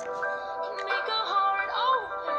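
A song playing, with a high singing voice holding long notes over the music.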